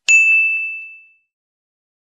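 A notification-bell sound effect: one bright ding that rings on and fades away within about a second.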